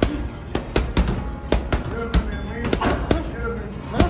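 Boxing gloves punching a heavy bag in quick combinations: about a dozen sharp hits over the four seconds, in bursts of two or three. Music with a singing voice plays in the background.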